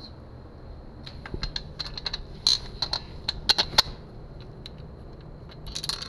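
Small metal hardware clicking and clinking as engine-mount bolts are handled and fitted into the bracket on a motorized bicycle frame. A quick irregular run of sharp taps starts about a second in and lasts nearly three seconds, and a few more come near the end.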